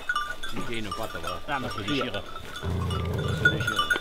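A pack of Grand Bleu de Gascogne hounds whining and yelping as they tear at a freshly caught hare. A low growl comes about three quarters of the way through.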